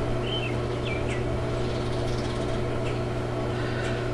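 A steady low hum, with a few faint, short bird chirps in the first second or so.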